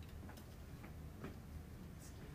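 Quiet room tone with a steady low hum and a few faint, soft ticks about a second in.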